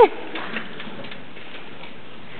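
Steady hiss of a hall's room noise with faint audience stirring and a couple of small ticks, just after a short rising-and-falling voice call cuts off at the very start.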